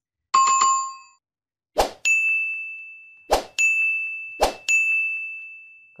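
Sound effects of an on-screen subscribe reminder: a bell-like ding, then three sharp mouse clicks, each followed by a ringing chime that slowly fades.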